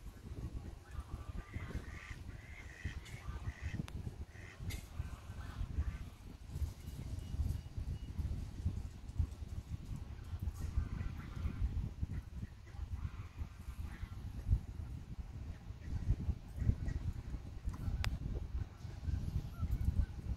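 Geese honking in scattered clusters of short calls, bunched in the first few seconds and again around the middle and later on, over a steady low rumble.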